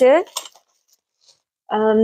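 A woman's voice with a drawn-out hesitation sound, then a single short click from small items being handled, a quiet gap, and her voice again near the end.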